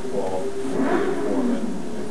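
An indistinct voice speaking in a low murmur, too muffled for words to be made out, over a steady low room hum.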